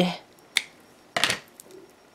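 Small scissors snipping the tail ends of stretchy elastic beading cord: a sharp click about half a second in, then a second, louder snip a little after a second.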